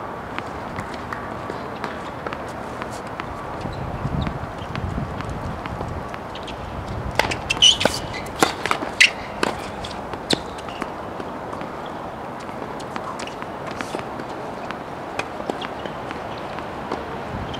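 Tennis ball bouncing on a hard court and struck by racquets: a cluster of sharp pops about seven to ten seconds in, around a serve, with scattered lighter taps elsewhere.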